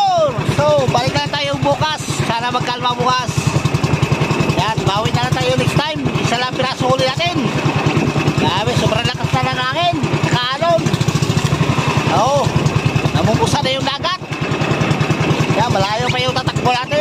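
Outrigger fishing boat's engine running steadily under way, a rapid even pulsing, with people's voices over it.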